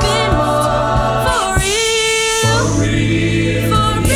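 A cappella group singing in close harmony, with a low sung bass line and vocal percussion. The bass drops out for about a second in the middle, then comes back in.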